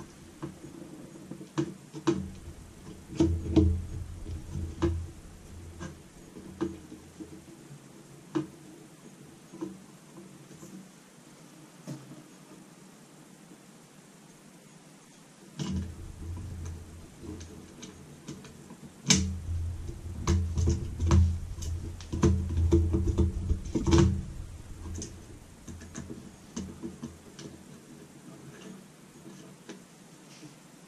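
Hands working on a MOBOTIX V16 camera's plastic body and cables, making irregular clicks, knocks and light thuds. One burst comes at the start and a second, busier one runs from about halfway to about four-fifths of the way through, with quieter stretches between.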